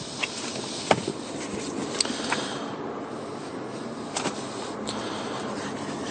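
Paper and leather handling: service booklets pulled out of a leather document wallet and their pages turned, giving several short, sharp rustles and clicks over a steady background hum.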